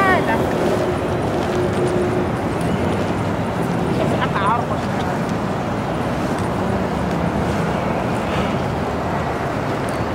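Busy city street ambience: indistinct chatter of many passers-by over the steady noise of traffic, with two brief high voice-like calls, one at the start and one about four seconds in.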